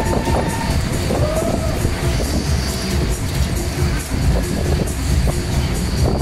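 Loud fairground ride music over the rolling rumble of the spinning ride's cars, with rising-and-falling tones in the first second or so.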